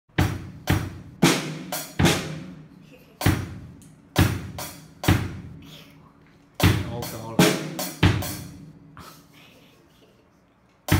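Drum kit practice: single strikes on the drums and cymbals, each ringing out, played haltingly with uneven gaps and trailing off near the end as the player loses the pattern she is practising.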